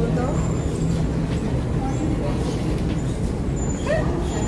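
Steady low rumble of a busy airport baggage-claim hall, with people talking in the background.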